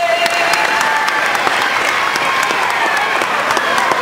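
Crowd applauding with cheering voices as the singer's long final held note fades out at the start.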